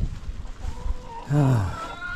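A man's short, low groan that falls in pitch about a second and a half in, in frustration at chickens that have got loose. Near the end, a chicken starts a drawn-out call.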